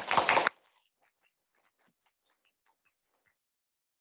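Audience applauding: a brief loud burst of clapping that drops off abruptly about half a second in, followed by a few faint scattered claps that stop after about three seconds.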